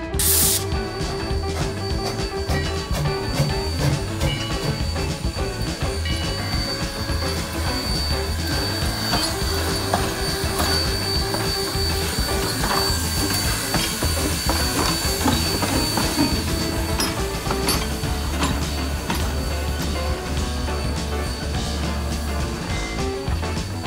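Background music over a steam locomotive, Sierra Railway No. 3 (a 4-6-0), hissing steam with scattered clanks and knocks. There is a sharp burst of hiss right at the start.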